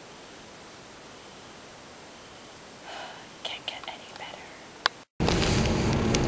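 A person whispering for about two seconds over faint room hiss, then a sharp click. An abrupt cut leads to the steady low rumble of a car interior.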